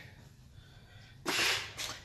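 A person's short, sharp puff of breath a little over a second in, then a fainter second puff, after a near-silent moment.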